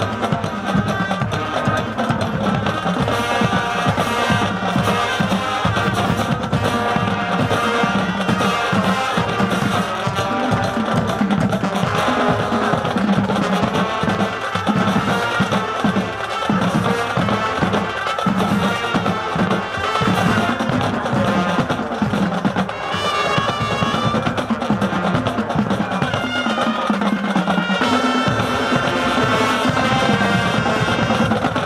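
High school marching band playing, with brass, clarinets and a drumline of tenor drums together in a steady beat.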